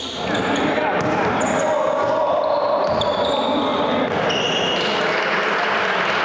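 Live sound of a basketball game in a gym hall: a ball bouncing on the court amid a steady din of players' voices.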